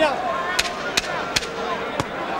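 Arena crowd noise with three sharp smacks of boxing gloves landing as two heavyweights work in a clinch, the second and third coming close together.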